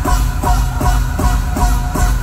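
Live band music played loud through a PA, with a steady fast beat of about two and a half strokes a second, heavy bass and a repeating melody line.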